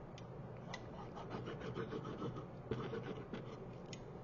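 Faint rubbing and scratching of cardstock as a paper piece is glued with a hot glue gun and pressed into place on a paper house, with a few soft clicks.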